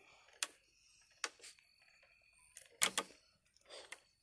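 Wood fire crackling, with about four sharp pops spread across a few seconds, the loudest a little before the end.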